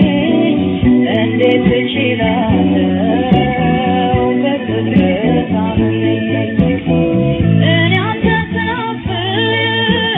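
Ethiopian song played from an old cassette: a singer with plucked-string and band accompaniment. The sound is dull, with nothing above the middle treble.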